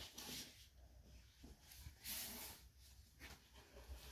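Near silence, with two faint rustles of a hardcover book being handled and opened, about half a second in and about two seconds in.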